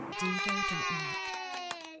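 Sound effect of an animated logo outro: a long pitched tone sliding slowly down in pitch over a short run of falling low notes, with light clicks scattered through it.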